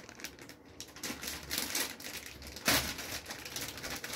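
Plastic snack bag of polvilho biscuits crinkling as it is handled, in irregular crackles with one louder crackle about two-thirds of the way through.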